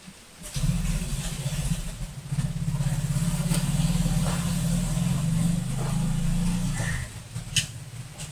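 An engine running, a low, steady drone with a fast even pulse, starting abruptly about half a second in and stopping about seven seconds in. A sharp click follows near the end.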